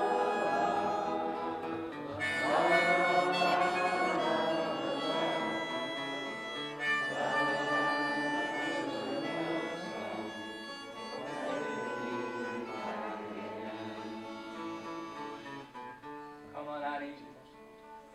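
Harmonica in a neck rack playing a melody over an acoustic guitar, an instrumental break in a folk song. The playing grows steadily quieter toward the end.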